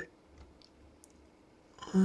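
A few faint clicks from the front-panel buttons of a Siglent SDS1102DL oscilloscope being pressed to open its trigger menu, in an otherwise quiet room. A man's voice starts again near the end.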